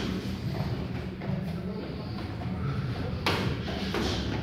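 A gloved punch landing with one sharp slap about three seconds in, over a steady low hum.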